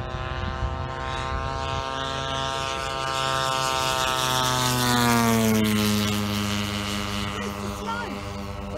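Propeller-driven radio-controlled scale warbird model aircraft making a low flyby. Its engine and propeller drone grows louder and then drops in pitch as it passes, about five seconds in.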